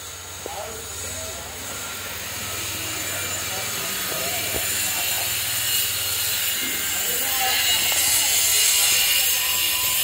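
A steady hissing noise that grows steadily louder, over a low hum, with faint voices underneath.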